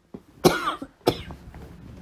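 A woman coughing twice in quick succession, the second cough about half a second after the first.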